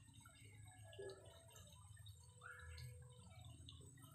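Near silence: faint outdoor background with a few brief, faint sounds scattered through it.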